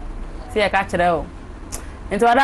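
A woman speaking a few words about half a second in, over a steady low hum.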